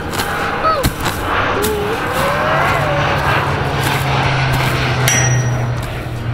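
A long-handled hoe chopping and scraping into dry, dusty dirt: a run of rough scrapes and dull strikes. A low steady hum joins about halfway through.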